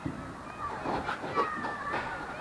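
Birds calling with short chirps over wind noise, with a few knocks from a handheld camera being turned.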